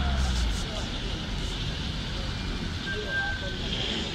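City street traffic: a van's low engine rumble as it pulls away dies down within the first half second, leaving a steady hum of traffic.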